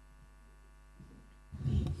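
Faint steady electrical mains hum, then about a second and a half in a brief, loud, low rumbling thud on the microphone.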